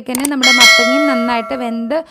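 A single bright, bell-like metallic ring that starts suddenly about half a second in and dies away over about a second and a half, with a woman's voice under it.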